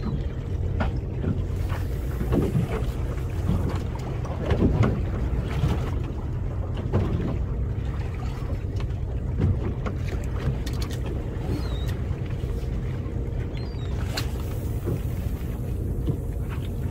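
Steady low rumble of wind on the microphone aboard a small boat at sea, with scattered light knocks through it, the strongest about four to five seconds in.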